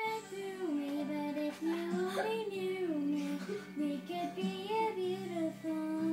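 Karaoke backing track playing from a small karaoke machine: pop music with a wavering melody line over steady low notes, much quieter than the singing just before it.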